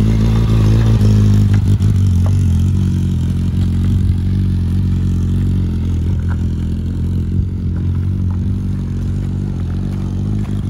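Motorcycle engine running at a low, steady note, loudest in the first second or two and easing slightly as the bike pulls away.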